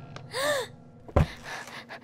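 A girl's short gasp that rises and then falls in pitch, followed a little over a second in by a sharp thump as she sits down heavily on the diving board.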